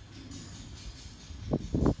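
Outdoor street ambience: a steady low rumble of wind on the microphone, with a faint hiss of leaves rustling in the trees. Speech starts again near the end.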